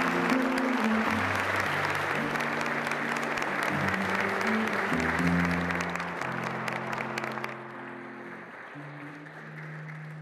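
A banquet-hall audience applauding, over music of held low notes that change pitch. The applause fades out about three-quarters of the way through, leaving the music on its own.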